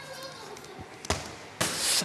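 A football strikes a freestanding target board with a single sharp thud about a second in, missing the scoring zones. Half a second later comes a short, louder rush of noise.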